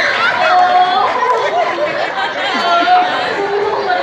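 Stage actors' voices in a jatra performance: several speaking over one another in loud, drawn-out dialogue, with some vowels held long, heard through the stage microphones and speakers.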